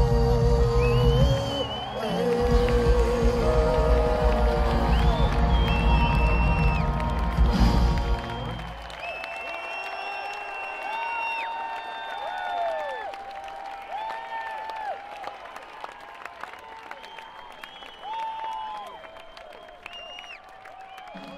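A live rock band plays the end of a song and stops on a final chord about eight and a half seconds in. The crowd's cheering, whistling and applause follow, heard from among the audience.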